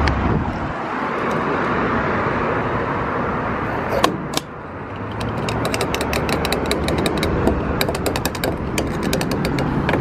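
Fuel rushing through a gas pump nozzle into a car's filler neck, with a sharp click about four seconds in as the flow stops briefly. From about five seconds on the flow resumes with a quick run of clicks as the nozzle is topped off.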